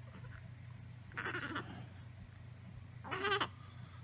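A sleeping newborn baby gives a short, wavering, bleat-like squeak near the end, after a brief breathy sound about a second in. A low steady hum runs underneath.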